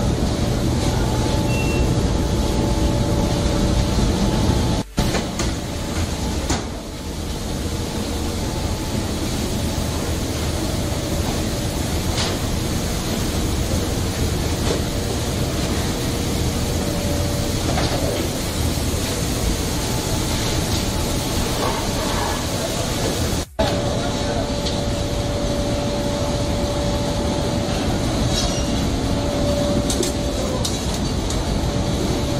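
Steady running noise of food-processing plant machinery and conveyors, with a faint steady hum, cutting out abruptly twice, about five seconds in and again past twenty-three seconds.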